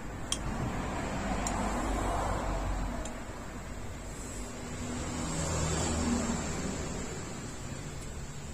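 A few light clinks of a metal spoon against a ceramic plate while eating, over steady background noise that swells twice.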